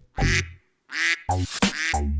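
Two short duck quacks about half a second apart, from a cartoon duck, followed by children's music starting up again.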